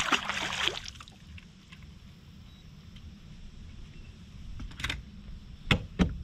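A short splash at the start, typical of a landed bass being released back into the lake. Then two sharp knocks on the bass boat's deck near the end, over a low steady rumble.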